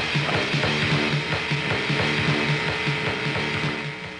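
Rock music: a fast, even clicking pulse over a repeated riff of low notes. It stops right at the end, leaving a ringing tone that fades.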